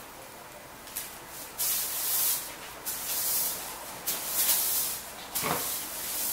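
Broom sweeping a floor: about five short brushing strokes, roughly one a second, with a hissy, high-pitched sound.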